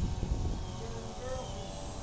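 Radio-controlled model airplane flying overhead: its motor and propeller give a faint, steady drone, under a low rumble of wind on the microphone.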